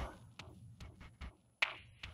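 A few faint clicks and light taps, with one sharper knock about a second and a half in.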